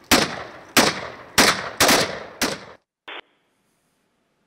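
Five loud gunshots, unevenly spaced over about two and a half seconds, each with a short decaying tail. The sound cuts off abruptly, and a very brief short sound follows just after three seconds.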